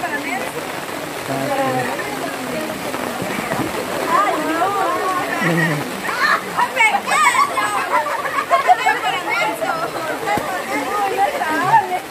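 A group of people chatting and laughing at once, many voices overlapping, over a steady hiss.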